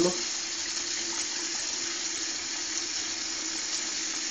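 Bathroom tap running steadily into a sink, with a faint steady low hum underneath.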